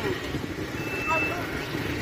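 Steady traffic rumble in an open bus yard, with one short high-pitched beep about a second in and faint voices.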